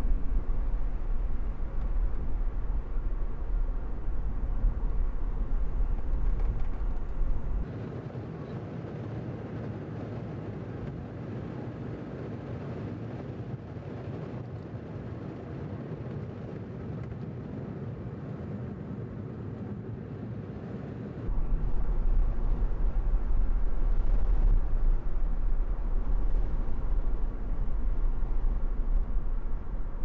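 Cabin noise of a Honda S660 on the move: a steady low rumble of road, wind and the small turbocharged three-cylinder engine. About eight seconds in, the deep rumble drops away and the sound goes quieter, then comes back loud about twenty-one seconds in.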